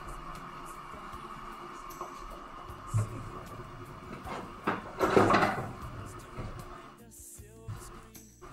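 Rummaging in a low kitchen cupboard: a knock about three seconds in, then a longer clatter and scrape around five seconds as a wooden serving tray is taken out, over quiet background music.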